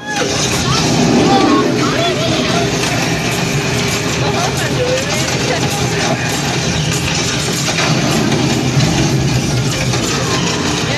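Loud soundtrack of an interactive screen-based dark ride: a dense wash of sound effects with voices mixed in.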